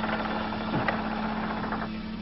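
A steady low hum over a faint hiss, holding one pitch throughout.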